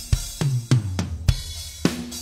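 Recorded drum kit played back from a mix: about six hits, with toms ringing out at two different pitches over cymbal wash. The toms are cleaned up with subtractive EQ and parallel-compressed through an API compressor.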